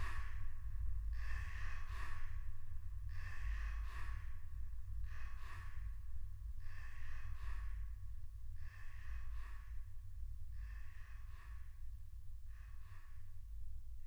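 A person's breathing or sighing, coming in pairs about every two seconds over a steady low hum, slowly getting quieter.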